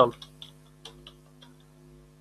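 A computer keyboard clicking as a few keys are struck at an uneven pace, over a low steady hum.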